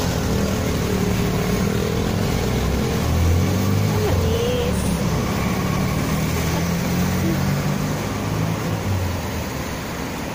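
Street traffic: car engines running and passing close by, a steady low rumble that swells about three seconds in.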